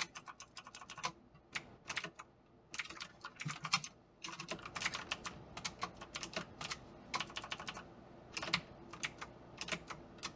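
Fast typing on an EagleTec KG010 mechanical keyboard with clicky Outemu Blue switches (Cherry MX Blue clones): a sharp click with each keystroke, coming in quick runs broken by short pauses.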